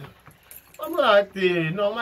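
Speech only: a man talking in French, with a short pause at the start.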